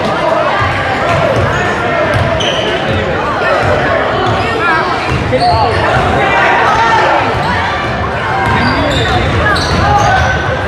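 Gym sounds during a basketball game: a basketball bouncing on the hardwood floor, sneakers squeaking, and players and onlookers calling out, all echoing in the large hall.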